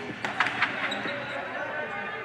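A few basketballs bouncing on a gym floor, sharp irregular thuds in the first second, over the echoing background of an indoor gym with faint players' voices.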